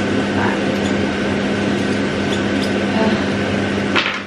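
Kitchen range-hood extractor fan running with a steady hum and rush, with a few light scrapes and ticks of a utensil stirring in a pan, and a sharp click at the very end.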